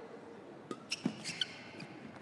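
Quiet arena between points, with a few short squeaks and clicks about a second in, typical of players' shoes on the badminton court mat.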